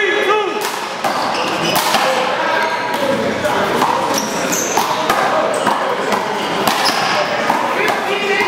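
A one-wall handball rally: a series of sharp smacks as a small rubber ball is struck by hand and hits the wall, spaced irregularly about a second apart, over the chatter of voices in a large hall.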